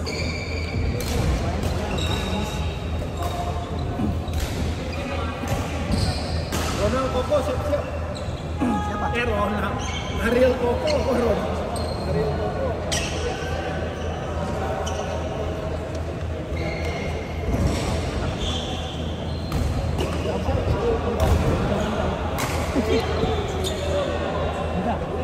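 Badminton play in a large hall: sharp irregular racket-on-shuttlecock strikes and short high squeaks of court shoes on a wooden floor, over a steady low hum and background voices.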